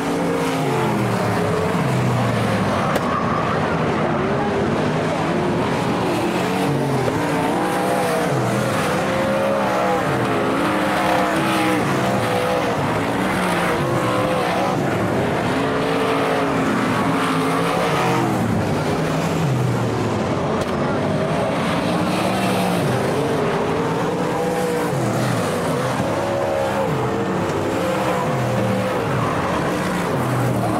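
Several winged dirt-track race car engines running together, their pitch rising and falling over and over as the cars accelerate through the turns and pass by. The sound stays loud, with the engines overlapping the whole time.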